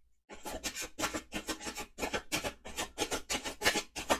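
A deck of tarot cards being shuffled by hand: a quick, even run of strokes, about five a second, starting a moment in.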